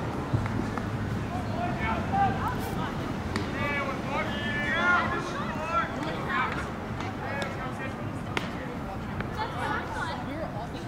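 Indistinct voices of people talking and calling out over outdoor background noise, with a couple of sharp clicks.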